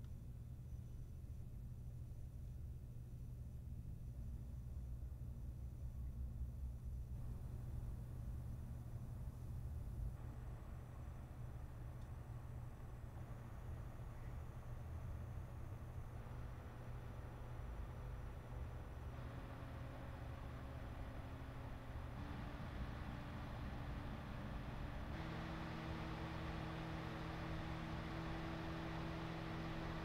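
Thermalright Peerless Assassin 140 CPU cooler's two fans (one 140 mm, one 120 mm) running while they are stepped up from 500 to 1500 RPM. A faint airy whoosh grows louder in steps every few seconds. In the second half, steady humming fan tones join in as the speed climbs.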